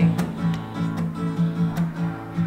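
Acoustic guitar strumming an A chord in a steady rhythm of down and up strokes.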